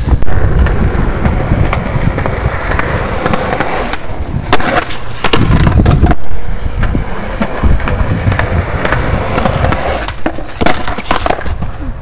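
Skateboard wheels rolling over concrete and asphalt in a continuous rough rumble, with sharp clacks of the board striking the ground a few times, clustered near the end.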